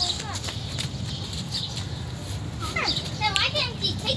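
Children's voices at play, with a short cluster of high calls and cries in the last second or so.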